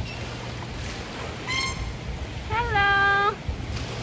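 Beluga whale calls: a short high squeal about a second and a half in, then a longer, louder, lower squeal that wavers at its start and then holds one pitch, over a steady low hum.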